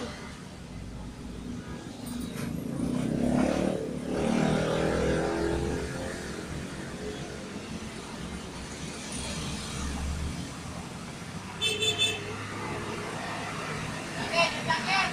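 Background road traffic: a motor vehicle's engine running past, loudest about three to five seconds in, with a brief high-pitched tone near the end.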